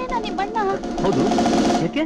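Film soundtrack: a voice over background music with a fast, even tapping rhythm, cutting off suddenly at the end.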